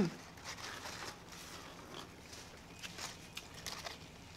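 Close-miked chewing of a burger and pastrami sandwich: soft, wet mouth clicks and crackles scattered through, with light crinkles.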